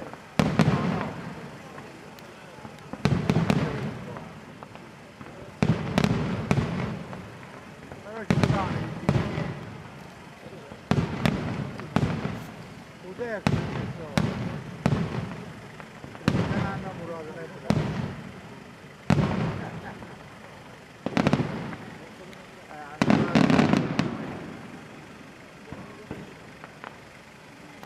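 Aerial firework shells bursting overhead in a steady sequence, a loud bang every second or two, each trailing off in a rolling echo.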